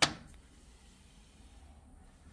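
An original VW rubber floor mat dropped back onto the steel floor pan of a 1962 VW Bus cab, landing with one sharp slap at the start.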